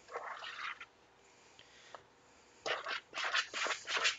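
Metal spoon scraping and churning through stiff cookie dough in a mixing bowl. There is a short burst of strokes at the start, a pause with one small click, then a quick run of repeated strokes from a little under three seconds in.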